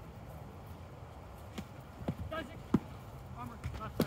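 Distant voices of players calling out across a field, with a few sharp knocks in the second half, the loudest about two-thirds of the way through, over a low rumble.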